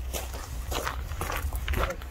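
Footsteps crunching on gravel as two people walk across it.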